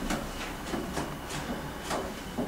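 Room tone: a steady hiss with a low hum and a few faint, soft clicks.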